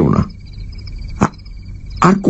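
Night-time insect and frog ambience from a radio play's sound effects: crickets chirping steadily in a rapid pulsing trill throughout, a low rasping croak that dies away at the very start, and a single sharp knock a little past halfway.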